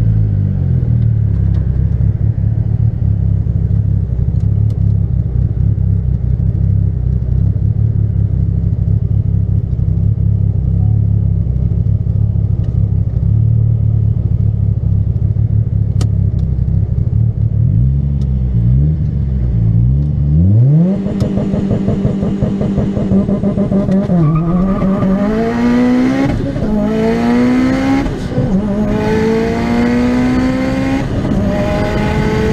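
Turbocharged 2.0-litre four-cylinder of a tuned Mitsubishi Lancer Evo IV heard from inside the cabin: a steady low drone at light throttle, a couple of short blips, then a hard full-throttle pull from about two-thirds of the way in. The revs climb, fall sharply at a gear change, and climb again.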